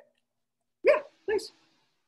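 A dog barking twice, two short loud barks about half a second apart.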